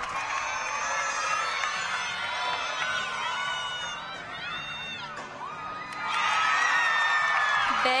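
Gymnastics crowd and teammates cheering and whooping, many high voices overlapping, swelling louder about six seconds in.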